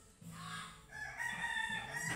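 A rooster crowing once, a single long call that starts about a third of a second in and holds its pitch to the end.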